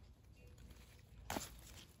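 Hand pruning clippers snip once through a thick jade plant branch, a single sharp click about a second and a half in, over faint rustling of the plant.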